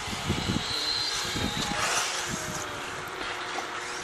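Road traffic noise, with one vehicle passing that swells and fades about two seconds in.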